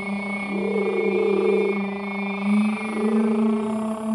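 Sound-healing toning: a steady drone with many overtones, and a higher sung tone that slides up and is held, twice.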